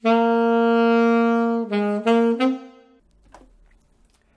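Alto saxophone playing a long held note, then three short, separated notes, the last the highest, stopping about three seconds in.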